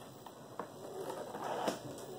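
Faint crackling of packing tape and cardboard as the top of a shipping box is held shut and taped, growing a little louder towards the end.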